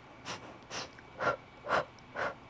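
A woman's short, rhythmic breaths, about two a second, during a pulsing Pilates core exercise.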